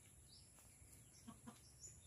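Near silence: faint outdoor background with a couple of faint, brief high chirps and a few soft ticks.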